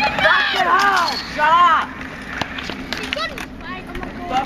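Young voices calling out in long, rising-and-falling shouts for the first two seconds, then quieter talk with a few sharp clacks of skateboards on concrete.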